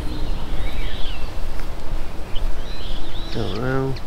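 Wind buffeting the microphone in a constant low rumble, with small birds chirping briefly several times. A person's voice comes in near the end.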